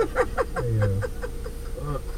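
Indistinct talk and vocal sounds from several passengers inside a van's cabin, in short broken bits, over a steady low hum.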